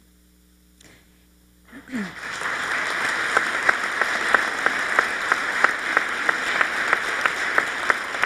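An audience of legislators applauding. About two seconds of near quiet, then the applause builds and holds steady, with some single claps standing out sharply.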